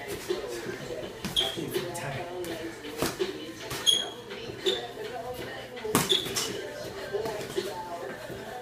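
Boxing gloves landing in sparring: several sharp smacks of glove on glove and body, the loudest about three and six seconds in, with short squeaks of sneakers on a hard floor between them.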